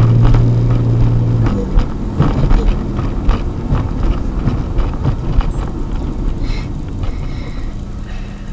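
Car driving, heard from inside the cabin: a steady low hum drops away about a second and a half in, leaving road rumble with scattered knocks and rattles.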